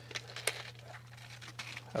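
Light plastic clicks and crinkles as a clear plastic compartment box is unlatched and its lid swung open, with a steady low hum underneath.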